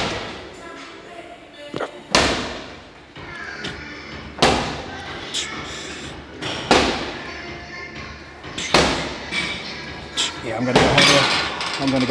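Cable machine weight stack clanking with each rep of straight-bar tricep pushdowns: four sharp clanks about two seconds apart, each ringing briefly. A voice comes in near the end.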